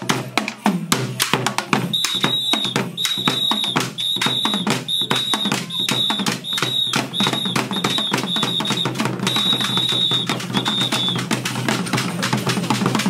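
Acholi traditional drums beaten in a fast, dense rhythm for a dance. Over the drumming a high steady tone sounds in short repeated blasts, about twice a second, from about two seconds in until near the end.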